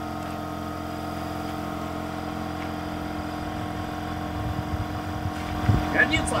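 An engine idling steadily, a constant hum with a fixed pitch.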